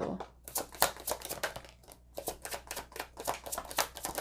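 A deck of oracle cards being shuffled and handled by hand: a quick, irregular run of card flicks and taps.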